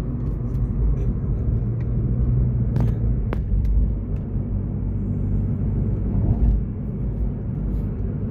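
Steady low rumble of a car driving, heard from inside the cabin, with two sharp clicks about three seconds in.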